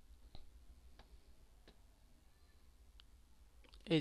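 A few faint, separate clicks of a computer mouse, spaced a second or so apart over a low background hum, with a man's voice starting right at the end.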